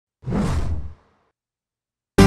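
A short whoosh sound effect, lasting under a second.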